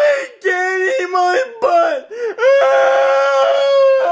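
A voice wailing and crying out: a few short drawn-out cries, then one long held wail through the second half.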